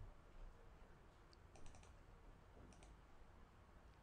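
Faint computer keyboard and mouse clicks, a single one, then a quick run of four or five, then a pair, as the Java file is saved and run in the editor.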